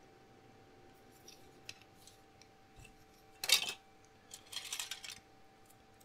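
Hard plastic model-kit parts and sprue trees clicking and rattling as they are handled. There are a few faint clicks, then a louder clatter about halfway through and a short run of rattles soon after.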